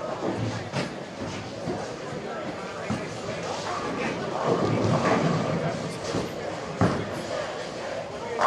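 Bowling alley din: background chatter from the crowd, with a bowling ball released and rolling down the lane in the second half, and a single sharp knock about seven seconds in.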